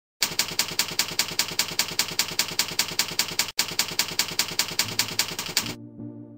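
Typewriter keystroke sound effect: rapid, even keystrokes at about six or seven a second, keeping time with text being typed out letter by letter, with one brief break a little past halfway. A low held tone comes in near the end as the typing stops.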